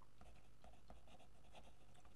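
Pen writing on a sheet of paper: faint, quick scratching strokes.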